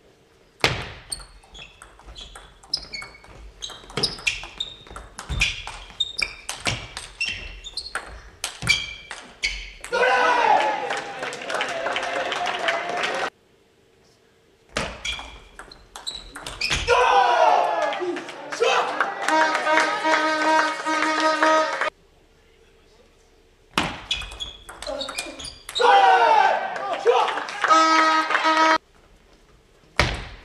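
Table tennis rallies: the celluloid ball clicks back and forth off the bats and the table in a quick irregular rhythm. Three points are played, a long one first and then two short ones, and each ends in a burst of spectators shouting and cheering.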